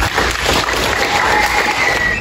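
Audience applauding, with steady, dense clapping.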